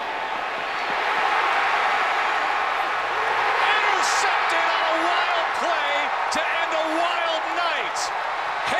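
Stadium crowd roaring during a football play, swelling about a second in, with scattered shouts rising above it.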